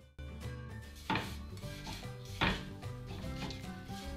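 A kitchen knife working a tomato on a wooden cutting board, with two sharper strokes about one and two and a half seconds in, over quiet background music.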